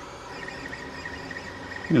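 Creality Ender 5 Plus 3D printer running a print: its stepper motors and fans make a steady whir with a thin, steady high tone.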